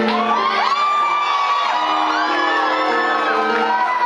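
Live band music with steady held chords while audience members whoop and cheer over it, their high calls rising and falling.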